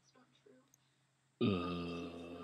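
A man's long, loud burp that starts suddenly near the end, its low pitch dipping at the onset and then holding steady.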